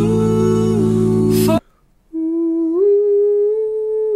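Male a cappella group singing a sustained five-part chord over a deep bass, an upper voice stepping up and back down within it; the chord cuts off about one and a half seconds in. After a short gap a single male voice hums a held note that steps up and then back down.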